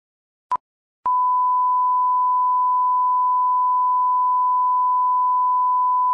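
A short electronic beep, then about half a second later a steady pure tone at the same pitch that holds without change.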